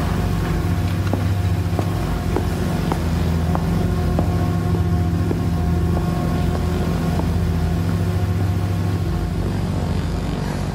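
Road bike rolling over cobblestones, a continuous rattling rumble carried through the handlebar-mounted camera, with scattered sharp knocks in the first half.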